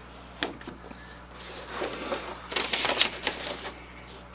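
Paper and card rustling as a folded paper sheet is handled and pulled from a cardboard box, a few light clicks at first and then a couple of seconds of crinkling.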